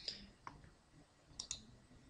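Faint computer mouse clicks: one click about half a second in, then a quick double click near the end that selects the text in a browser address bar.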